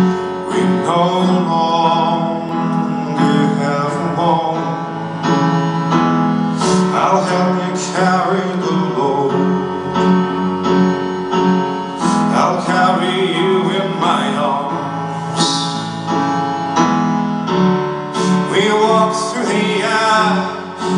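A live band playing a slow song: piano to the fore with drums and other instruments, the sound loud and full throughout.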